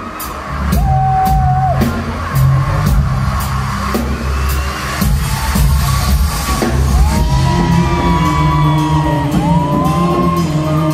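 Live band playing amplified music in a large hall, recorded from within the audience: a heavy bass-and-drum beat with held melody notes over it.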